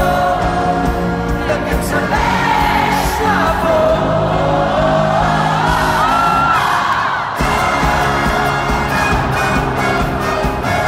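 Live pop band with a horn section, drums, guitars and keyboards, heard from within the arena crowd, with singing and crowd whoops over the music. About two seconds in, the drums drop out, leaving held chords and voices. A little after seven seconds, the full band comes back in all at once.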